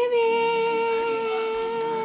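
A singing voice holding one long, steady note.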